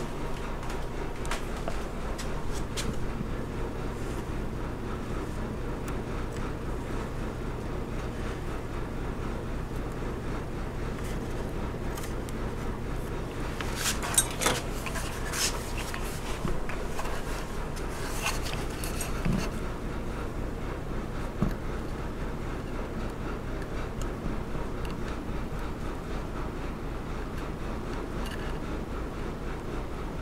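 A steady low hum in the shop, with a few light clicks and scrapes through the middle as a wooden board and a pair of steel dividers are handled.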